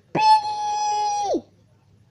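A child's voice holding one high, steady squeal for just over a second, sliding up at the start and dropping away at the end.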